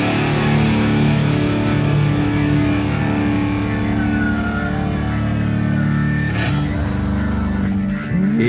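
Doom metal band playing live: distorted electric guitars, bass and drums holding the song's closing sustained chord, with a cymbal crash about six and a half seconds in.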